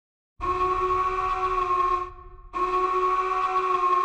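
Two long, steady horn blasts, each about a second and a half, with a short pause between them.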